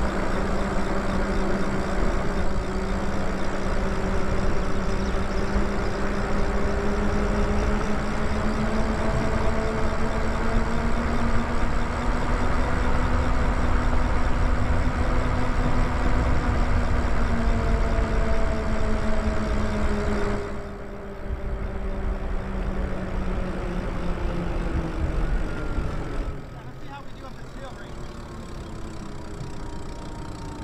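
Electric bike's motor whining at riding speed over a steady rumble of wind on the microphone. The whine climbs slowly in pitch, then falls as the bike slows. The wind rumble drops off sharply about 20 seconds in and again about 26 seconds in.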